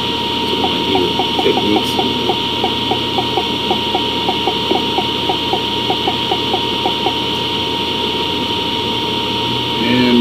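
Steady hum and hiss of room and recording noise with a thin steady high tone. A faint, even ticking of about four ticks a second runs through most of the first seven seconds.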